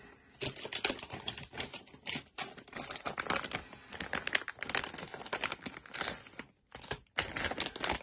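Clear plastic bag crinkling in quick, irregular crackles as hands work it open, with a short pause shortly before the end.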